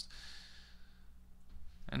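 A man breathing out in a soft sigh that fades away over about a second, over a faint steady low hum.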